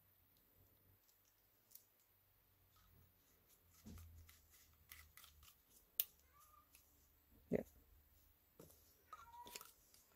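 Faint clicks and taps of hard plastic parts being handled as a threaded cap is screwed onto a plastic polymer-clay extruder barrel, with a sharper click about six seconds in and a knock a second and a half later.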